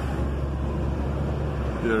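Car driving, heard from inside the cabin: a steady low rumble of engine and tyre noise.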